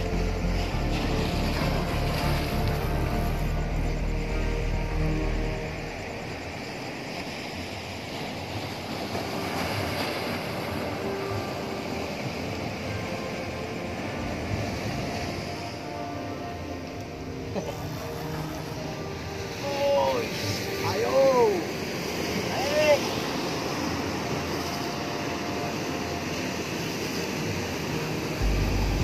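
Sea surf washing on the shore as a steady rush, under background music, with a few short shouted cries a little past the middle.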